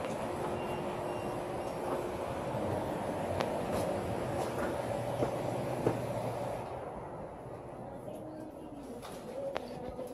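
Small hard wheels of a loaded platform cart rolling over a concrete sidewalk in a steady rumble, with a couple of sharp knocks; about two-thirds of the way through the rolling becomes much quieter.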